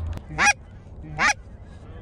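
Goose call blown by hand: two short, sharp notes about a second apart, each rising steeply in pitch, aimed at approaching snow geese.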